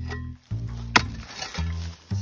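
A hoe blade striking a hard earthen termite mound: one sharp knock about a second in, over background music with a steady low bass.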